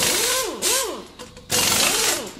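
Loud logo-sting sound effect: a harsh hiss with a pitched whine that rises and falls again and again, about three sweeps a second. It starts abruptly at the beginning, fades about a second in, and comes back loud about a second and a half in.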